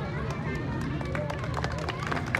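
Outdoor crowd chatter: many people talking at once in the background over a steady low hum, with a few sharp clicks toward the end.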